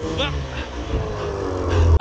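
Snowmobile engine running loud and labouring while the sled is stuck in deep powder snow, with a short laugh over it near the start. The engine sound stops abruptly at the end.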